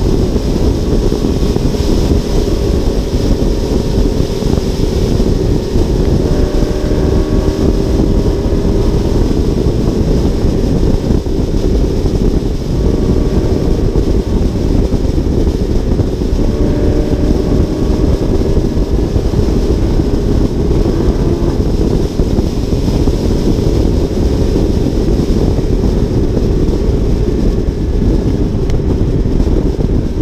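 Steady wind rush over an exterior GoPro on a moving Audi R8 at freeway speed, with a faint engine drone that drifts slightly in pitch underneath.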